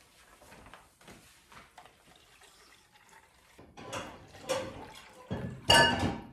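Water poured from a plastic measuring pitcher into plastic cups, splashing. It starts about three and a half seconds in and is loudest near the end.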